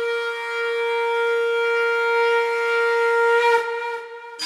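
Recorded music intro: one long, steady horn-like wind note, held and swelling in loudness, breaking off about three and a half seconds in.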